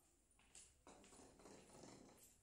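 Faint footsteps and shuffling on a tiled floor, starting about half a second in and going on unevenly.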